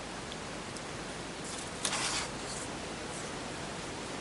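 Steady recording hiss. About halfway through comes a brief rustle with a small click as a paper craft tag is handled and pressed on the cutting mat.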